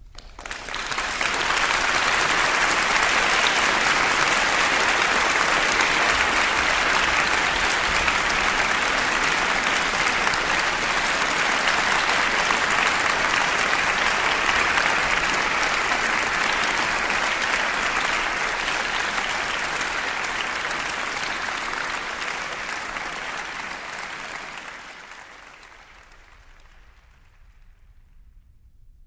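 Applause, swelling in over the first couple of seconds, holding steady, then fading away over the last few seconds.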